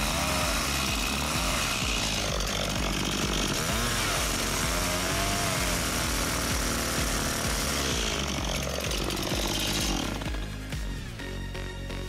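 Two-stroke chainsaw cutting notches into black locust posts, its engine revving up and down with each cut. The saw stops about ten seconds in and the sound drops away.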